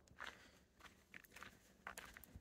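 Faint footsteps of a person walking: a few soft, irregular steps.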